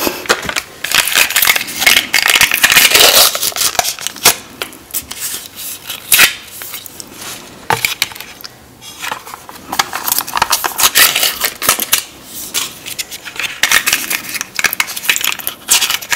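Close-miked crinkling and crackling as foil lids are peeled off small plastic dipping-sauce cups, with clicks of the plastic cups being handled. The sounds come in quick runs, busiest in the first few seconds, with a quieter stretch about halfway through.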